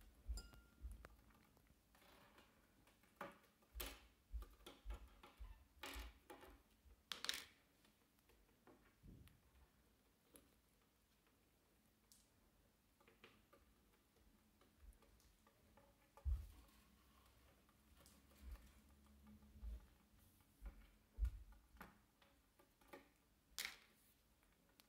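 Scattered light taps and clicks on a wooden tabletop and a plastic bowl, coming a second or a few seconds apart, with a few soft low knocks.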